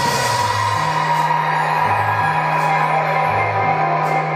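Rock band playing live: the bass holds long notes that step from pitch to pitch under a loud, dense wash of guitar and cymbals.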